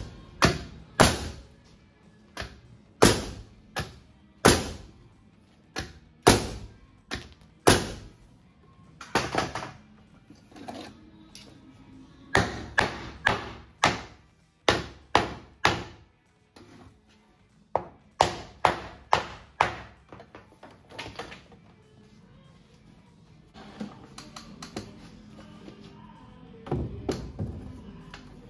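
Hammer driving nails into the wooden boards of a door header: a long run of sharp blows in quick groups with short pauses. The blows stop about 21 seconds in, leaving a few softer knocks.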